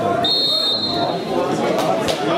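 Referee's whistle blown once, a short shrill blast of about half a second, signalling kick-off, over background voices.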